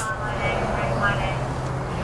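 A steady low motor hum over outdoor background noise.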